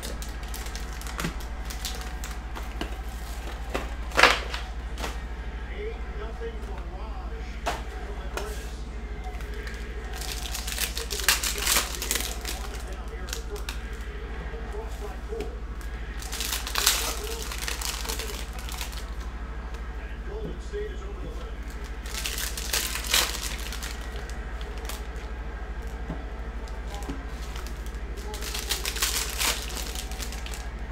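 Sports card packs and their box being handled and opened by hand: bursts of wrapper crinkling and tearing every five or six seconds, a sharp crack about four seconds in, and light shuffling of cards in between, over a steady low hum.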